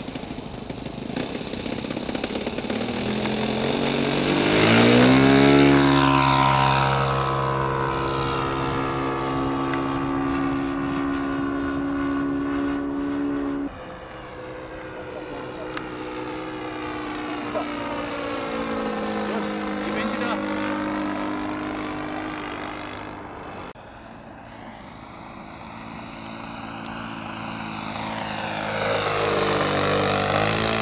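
Engine and propeller of a radio-controlled Ju 87 Stuka scale model plane. A few seconds in it opens up for the takeoff, climbing steeply in pitch and loudness, then holds a steady high note in flight. Later the pitch swings up and down as the plane circles, and the sound builds again near the end as it makes a low pass.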